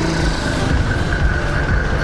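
A steady low mechanical rumble with a constant high whine above it, typical of an engine running nearby.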